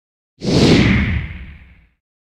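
A whoosh sound effect for a title-card transition, with a deep low rumble under it: it starts sharply about half a second in and fades away over about a second and a half.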